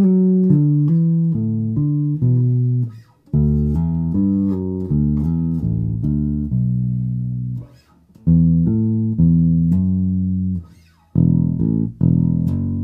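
1978 Music Man StingRay electric bass played solo through an amp: runs of short plucked notes in a funky E-minor groove and fill, in three phrases with brief gaps about three and eight seconds in, and one held note near the middle.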